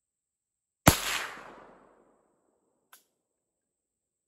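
A single shot from an Auto Ordnance M1 Carbine in .30 Carbine, a sharp crack about a second in that echoes away over roughly a second. A faint click follows about two seconds later.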